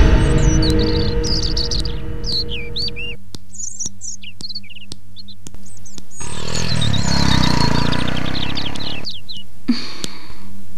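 Small birds chirping and tweeting in quick, repeated calls. Over the first three seconds this overlays the fading end of background music, with a steady low hum beneath and a run of sharp ticks, about two a second, in the middle.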